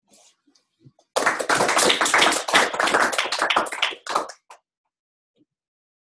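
Audience applauding: a burst of clapping that starts about a second in, lasts about three seconds and then dies away.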